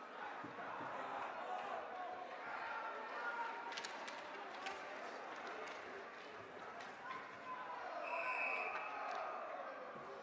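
Ice hockey rink sound: crowd chatter, a run of sharp stick-and-puck clacks about four seconds in, and a short referee's whistle blast about eight seconds in that stops play.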